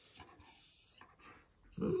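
Near the end, an Alaskan malamute starts a long, steady, low-pitched 'ooh' moan, a dog's vocal 'talking' sound.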